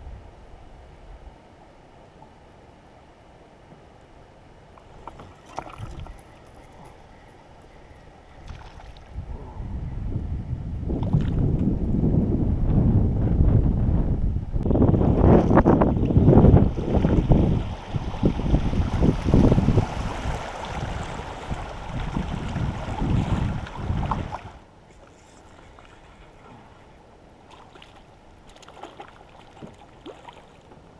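Water rushing and splashing around a kayak's hull as it runs through a shallow riffle, with wind on the microphone. It grows loud about ten seconds in and cuts off suddenly about twenty-four seconds in; before and after there is only a faint low background.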